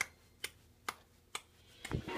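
Clock-tick sound effect in a karaoke backing track: four even ticks about half a second apart, with the music starting to come back in near the end.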